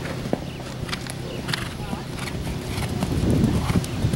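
Hoofbeats of a horse moving at speed, irregular strikes that grow louder near the end as it comes closer.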